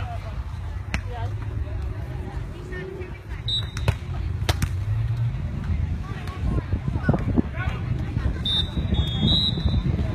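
Beach volleyball rally: a few sharp slaps of hands striking the ball, the last two close together about four seconds in, with players' voices calling during the play near the end, over a steady low rumble.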